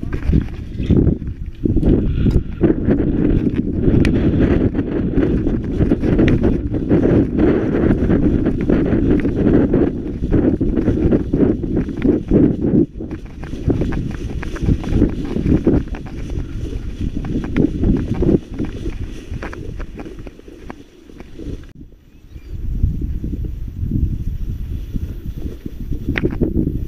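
Footsteps and leaves brushing against the legs as a person walks through a soybean field, with a brief lull about twenty seconds in.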